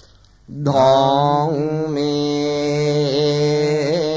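Male voice chanting Buddhist pirith in Pali on long, steady held notes. There is a short breath pause right at the start, and the chant resumes about half a second in.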